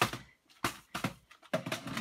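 Hard plastic storage boxes being handled, giving about four short clicks and knocks spread over two seconds, the first the loudest.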